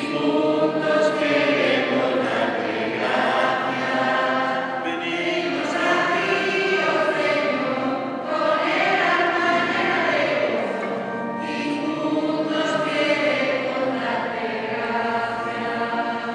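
Children's church choir singing a hymn in sustained, held notes.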